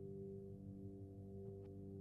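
Quiet, steady drone of several held tones, the ambient intro of a progressive-rock track. A couple of faint ticks come near the end.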